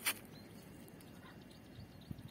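Outdoor ambience at a riverbank: a brief, sharp crackle right at the start, then a faint, uneven background hush.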